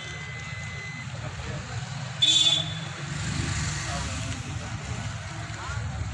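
Low murmur of a gathered crowd over a steady low rumble. About two seconds in comes one short, loud, high-pitched toot of a vehicle horn.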